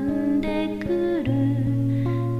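Solo voice singing with acoustic guitar accompaniment: held notes that slide down about a second in, over guitar picked in an even rhythm.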